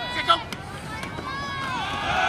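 Voices shouting on and around a football field as a play starts from the snap, with one sharp shout about a third of a second in and a longer drawn-out call later.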